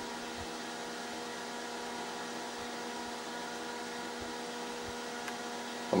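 Small computer cooling fan running steadily at a raised voltage, a steady whir with a hum in it, as it spins a test anemometer.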